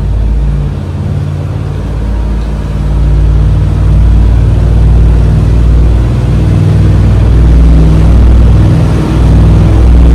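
Twin LS V8 inboard engines of a cruiser yacht being throttled up, revs climbing from about 2100 to 2300 rpm. A low, steady engine drone that gets louder about three seconds in and then holds, with water rushing past the hull.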